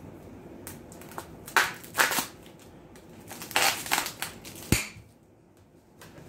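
Paper packing rustling and crinkling in two bursts as a doll is unpacked from its cardboard box, with a single sharp tap just before the end.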